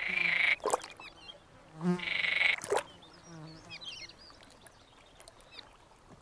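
Male marsh frogs calling: two loud, pulsed croaking calls about half a second each, one at the start and one about two seconds in, with fainter short chirps afterwards. These are males' advertisement calls to attract females and hold a territory.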